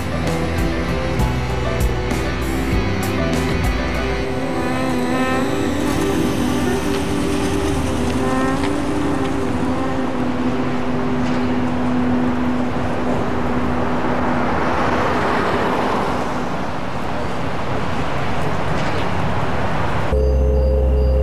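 A car pulling away and driving off, with background music playing throughout.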